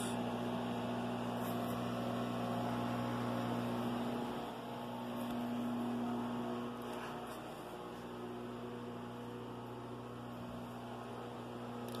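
Steady low electrical hum from a running appliance, a little weaker from about four and a half seconds in.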